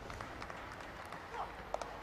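Faint, steady open-air cricket-ground ambience with a short, sharp knock near the end: a cricket bat hitting a short-pitched ball and skying it.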